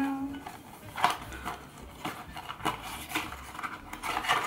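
Small cardboard gift box being opened and its contents handled: scattered light clicks and taps at irregular intervals.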